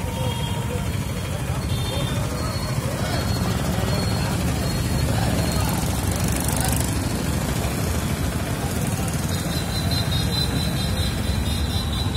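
Street traffic noise with an engine idling steadily close by, amid a crowd's voices.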